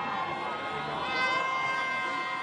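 Several car horns honking at once in long, overlapping blasts of different pitches, over crowd noise: drivers sounding their horns in support of street protesters.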